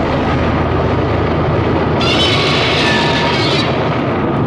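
Sound-effect explosion and fire rumble, a loud, continuous rumbling blast with a fresh surge about two seconds in.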